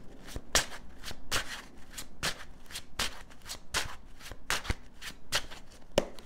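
A tarot deck being shuffled by hand: a steady run of short card slaps and clicks, about three a second.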